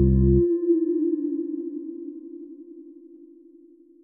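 Electronic music breaks off: a low bass chord stops about half a second in, leaving one held synthesizer tone with a slight wavering that slowly fades away.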